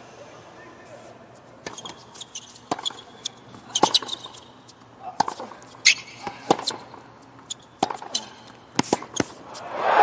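Tennis rally on a hard court: a ball struck by rackets and bouncing, a sharp crack about once a second. Near the end a stadium crowd breaks into loud cheering as the match point ends.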